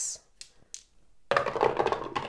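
Two dice rolled down a dice tower, a dense clatter of about a second as they tumble and land in its tray, after a couple of faint clicks as they are picked up.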